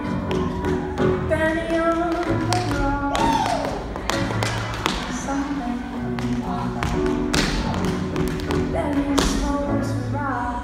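Tap shoes striking the stage in quick, irregular clusters of sharp taps, over a recorded pop song with a woman singing.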